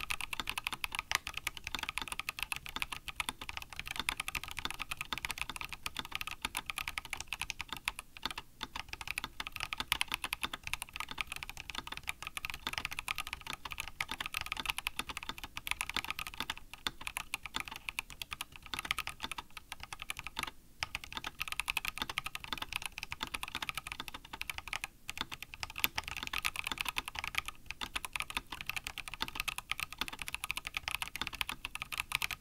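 Rama Works Kara SEQ2 60% mechanical keyboard with unlubed Kinetic Labs Salmon tactile switches, lubed Matrix stabilizers and GMK keycaps, no case dampening, typed on steadily as a sound test. A continuous patter of keystrokes with a few brief pauses.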